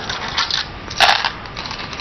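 Go stones clattering as they are gathered off a wooden board and dropped back into their wooden bowl, with a sharp clack about a second in.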